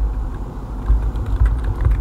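Typing on a computer keyboard: a run of light key clicks as text is entered, over a steady low rumble.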